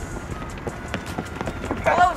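Outdoor open-air noise with scattered light footfalls of people running on pavement. A voice calls out near the end.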